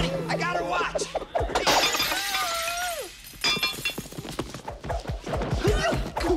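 Film soundtrack: men shouting, then a sudden glass-shattering crash about one and a half seconds in, followed by a held high tone that slides down and scattered knocks and clatter.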